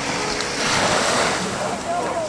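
Small waves washing in over the shallows, a rushing wash that swells about half a second in and then eases. Faint voices come in near the end.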